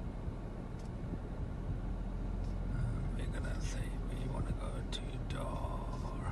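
Faint murmured voice over a steady low hum in a car cabin, with a few soft clicks in the second half.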